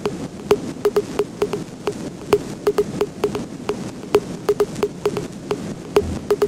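Added sound-effect track for a timed pause: sharp, irregular clicks, about three to five a second, each with a short low note, over a steady hiss.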